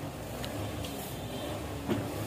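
Steady low background rumble with a faint click near the end.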